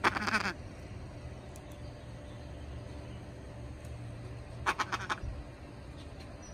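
Amazon parrot calling: one harsh half-second squawk at the start, then a quick run of about five short, clipped calls about five seconds in.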